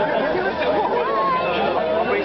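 Chatter of several guests talking at once around a dinner table, voices overlapping.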